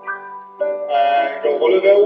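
Piano accompaniment for a ballet barre exercise: held notes that grow into fuller, louder chords about halfway through.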